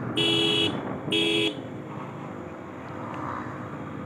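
A vehicle horn honks twice in quick succession, the first blast about half a second long and the second a little shorter, over steady traffic noise.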